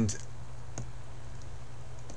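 Two faint computer mouse clicks, about two-thirds of a second apart, over a steady low electrical hum.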